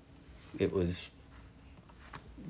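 A brief spoken remark in a small room, otherwise quiet room tone.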